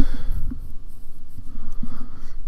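Scratchy rustling and handling noise close to a microphone over a low rumble, with a breath near the start.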